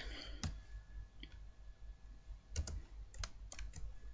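Faint, sparse clicks of computer input: a single click about half a second in, then a quick cluster of about eight clicks in the second half, over a low steady hum.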